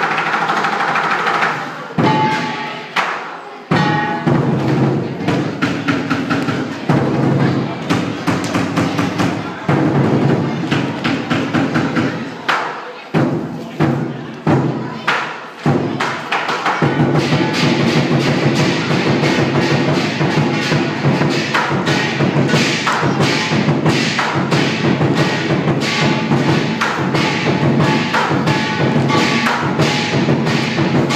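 Lion dance percussion: a big drum beaten with crashing cymbals, dense rapid strikes. It stops briefly a few times in the first half, then runs on as a steady, unbroken rhythm from a little past the middle.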